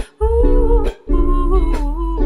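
A woman humming a slow, held melody over strummed ukulele chords. The sound drops out briefly twice.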